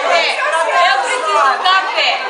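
Several women's voices talking over one another, lively chatter in a large room.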